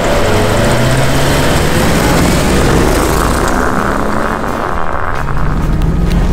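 Audi A8 accelerating hard on four deflated run-flat tyres: engine noise under a loud, steady rumble of the flattened tyre rubber rolling and scrubbing on the road.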